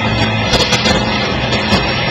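Live rock band playing loudly: drums with sharp cymbal and snare hits over held guitar and bass notes.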